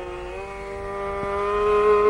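Carnatic violin holding one long bowed note, sliding slightly down into it and then swelling louder, with a faint lower note sustained beneath.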